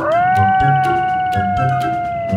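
A long, drawn-out animal cry sound effect, rising quickly at the start, held at one pitch and dropping away at its end, over background music with a steady beat.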